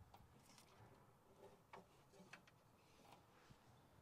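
Near silence, broken by a few faint, scattered clicks: hands working at the wiring and starter in the engine bay.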